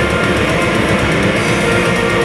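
Heavy metal band playing live: distorted electric guitars, bass and drums, loud and continuous, with fast, dense drumming.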